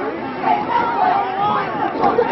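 Indistinct chatter of several people talking at once, with general crowd babble behind it.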